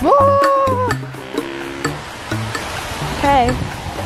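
Background pop music: a steady beat with a bass line, and a voice holding one high note through the first second, bending down at its end, then singing a short falling run about three seconds in.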